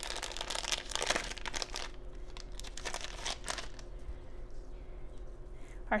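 Clear plastic bag crinkling as it is opened and handled. The crinkling is dense for the first two seconds, sporadic around the three-second mark, and dies down after about four seconds.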